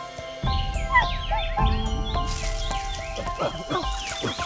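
A young chimpanzee calling in many short, high rising-and-falling cries, with a few lower calls near the end, over music with held notes.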